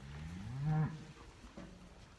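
A single Angus cow moo, low-pitched and lasting under a second, rising slightly in pitch before it stops.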